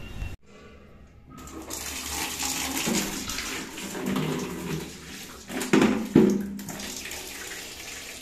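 Water running from a tap into a plastic bucket, filling it. It starts after a second or so of near silence and then rushes steadily.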